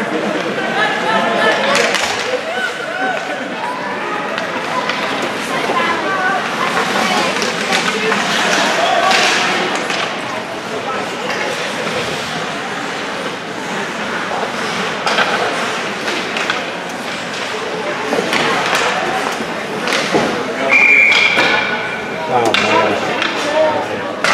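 Ice hockey game in an echoing rink: voices and shouts from players and spectators throughout, with repeated sharp clacks of sticks and puck against the ice and boards. A short referee's whistle blast sounds near the end, as play stops after a goal.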